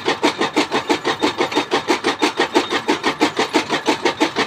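Wooden pestle grinding in a kundi (mortar bowl), a steady run of scraping strokes about four to five a second.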